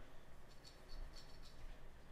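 Cloth cleaning patch held in forceps scrubbing inside the slide rails of a Beretta 92FS pistol: a few faint, short scratchy strokes between about half a second and a second and a half in.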